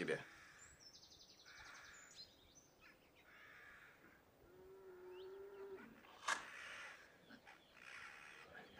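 Quiet outdoor ambience with a small bird's rapid high trill about a second in. Later there is a brief steady low tone, and a single sharp click near the end.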